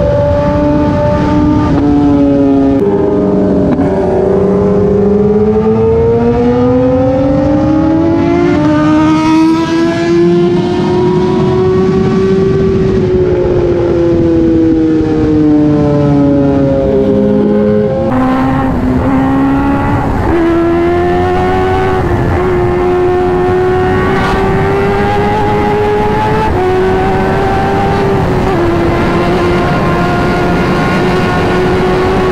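Kawasaki sport motorcycle's inline-four engine at highway speed, heard from the rider's seat with wind noise on the microphone. The engine note dips, climbs steadily for several seconds under acceleration, then eases back. After a sudden break about 18 seconds in, it runs higher and steadier with a few small dips.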